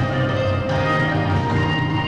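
Children's choir singing held notes together, over a steady instrumental accompaniment.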